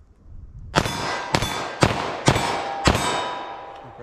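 A 9mm pistol firing 124-grain +P rounds five times in quick succession, about half a second apart, starting about a second in. Each shot is followed by the ringing of a steel silhouette target at about 14 yards.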